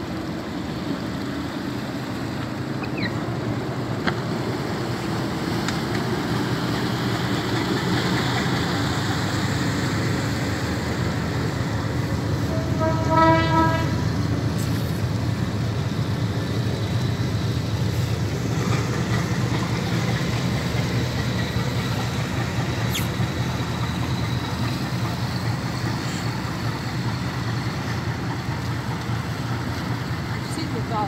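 Boat engines running steadily in a low drone as the vessels pass close by, with one short horn blast about thirteen seconds in.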